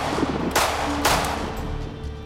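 Semi-automatic pistol shots in quick succession, about half a second apart, each with a short decaying tail, over background music.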